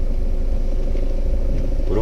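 Steady low rumble of engine and road noise inside a moving vehicle's cabin, with a faint steady hum above it.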